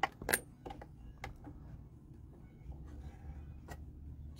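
A few small sharp clicks and taps, irregularly spaced with the loudest about a third of a second in, from hands working a sewing machine, over a faint low hum.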